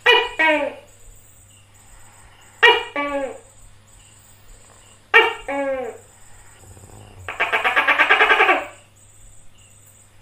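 Tokay gecko calling "to-kek": three loud two-part calls about two and a half seconds apart, each part falling in pitch. Near the end comes a rapid rattle lasting about a second and a half.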